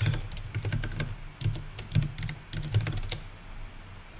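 Typing on a computer keyboard: a quick, uneven run of keystrokes.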